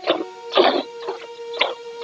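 Cow being milked by hand: streams of milk squirting into a pail in a steady rhythm, about two squirts a second.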